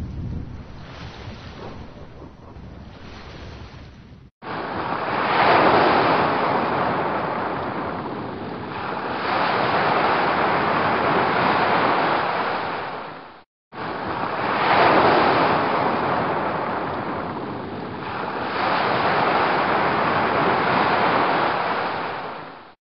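Ocean surf washing onto a beach: a rushing hiss that swells and ebbs in slow surges. The sound drops out abruptly about four seconds in and again just past halfway, then starts up again.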